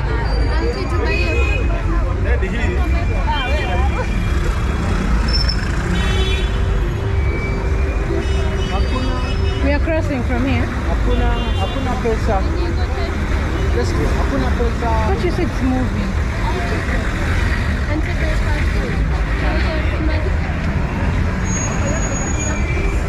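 Busy night-time city street: steady traffic rumble from cars and buses crawling past, with passers-by talking nearby. A few short horn toots sound, notably about six seconds in and around ten to twelve seconds in.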